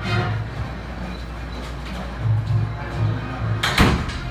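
High school marching band playing its opener, low notes pulsing in a steady rhythm, with one loud crash just before the end.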